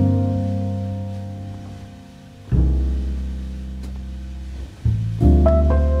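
Slow, soothing jazz piano music: chords struck at the start, about halfway through and near the end, each left to ring and fade, with a deep bass note under each.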